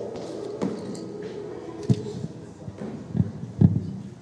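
Several short, sharp thuds from a clean and jerk with a 35 kg barbell: the lifter's feet stamping on the wooden platform and the bar being caught, the loudest a little past three and a half seconds in. A low murmur of voices runs beneath.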